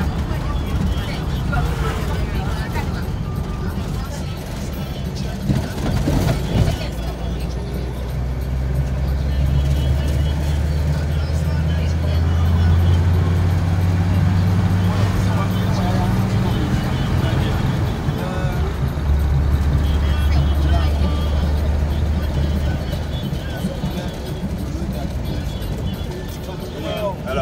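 Engine and road noise of a moving car heard from inside the cabin: a steady low hum that grows louder through the middle and eases off near the end, with voices and music over it.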